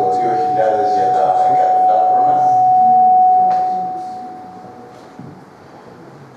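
Microphone feedback through a public-address system: a steady single-pitched whistle that swells to its loudest about three seconds in, then fades away by about five seconds. A man's voice talks over it in the first half.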